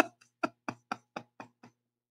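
A man's laughter trailing off: short pulses of breathy laughter, about four a second, getting fainter and dying away in the first second and a half.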